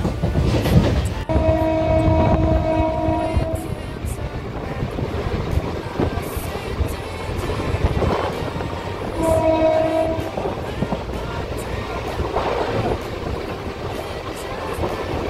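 Train horn sounding twice: a steady blast of a bit over two seconds starting about a second in, and a shorter one of just over a second about nine seconds in. Under both runs the continuous rumble and rattle of a moving train.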